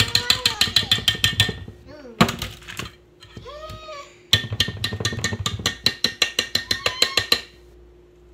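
Rapid metallic rattling against a stainless steel mixing bowl, about ten clicks a second, in two bursts of a few seconds each with a short pause between. Children's voices are heard briefly in the pause.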